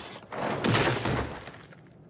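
Anime fight sound effects: a hit, then a crash with breaking stone as a body slams into a stone-block wall. The crash surges just before a second in and then dies away.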